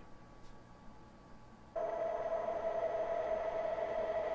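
A brief near-quiet pause, then a steady electronic tone that starts suddenly a little under halfway through and holds, with one strong pitch, a few fainter higher ones and a light hiss underneath.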